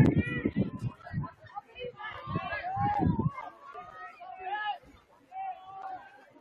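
Indistinct voices calling and talking, some high-pitched and drawn out, louder in the first half and fading toward the end.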